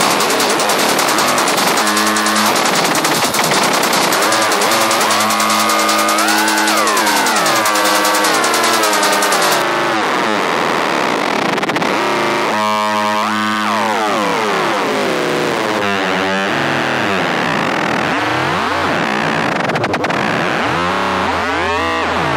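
Dark techno from a DJ mix: dense, distorted synthesizer sounds with many sliding pitches. A fast, hissing high layer drops out about ten seconds in.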